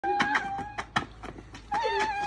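A young man's high, drawn-out vocal cry, then a second cry that bends in pitch near the end. Between them come a few sharp scuffs of shoes on brick paving.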